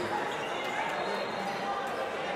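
Basketball gym ambience in a large hall: many indistinct voices from the crowd and players, with a few short sharp knocks.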